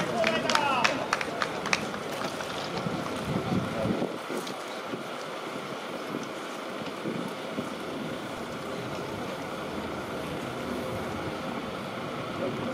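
Outdoor ballpark ambience: a steady wash of wind on the microphone and distant background noise. Voices and a few sharp clicks are heard in the first two seconds.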